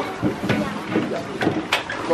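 A few hollow knocks and bumps from a small plastic paddle boat as a child climbs into it at a dock, over background voices.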